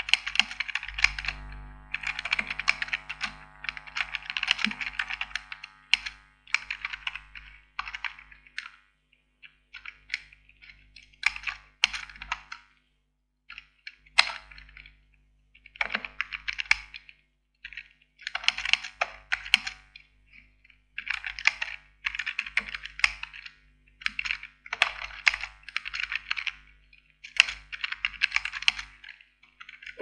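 Typing on a computer keyboard: quick runs of keystrokes broken by short pauses, with a near-silent gap about halfway through.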